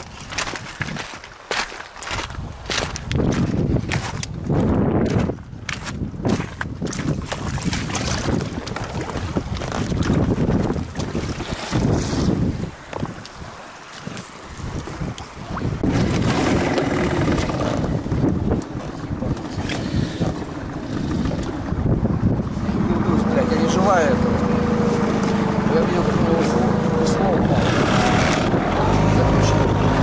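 Wind buffeting the microphone and irregular handling knocks as the inflatable boat gets under way. From about halfway an outboard motor runs steadily on the river, its note growing stronger near the end as the throttle is opened.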